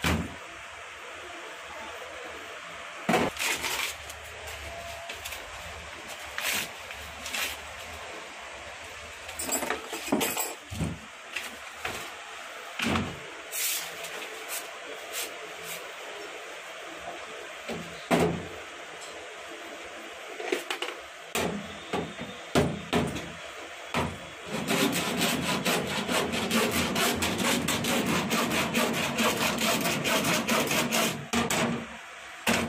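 Lead-acid battery plates and separators clacking and knocking as they are handled and stacked, then near the end rapid scraping strokes of a metal file across the plate group's lead lugs, filed so they fit the comb and the solder grips firmly.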